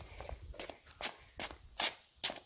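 Footsteps on brick paving: short scuffing steps at about two a second, the last one loudest.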